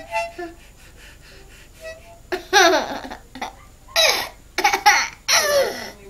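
A few faint, short harmonica notes, then a toddler laughing in several loud bursts starting about two seconds in.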